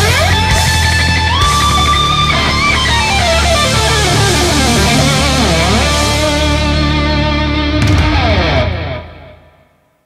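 Rock music led by an electric guitar playing bent and held notes over a steady bass. The song ends about nine seconds in, dying away over the last second or so.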